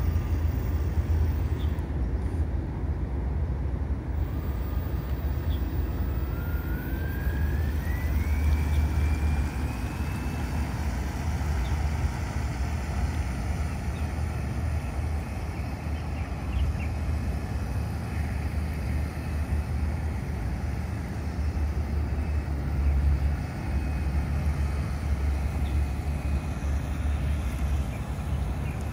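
Steady low rumble. About five to ten seconds in, a faint whine rises in pitch, the radio-controlled model boat's motor speeding up as it runs out across the water.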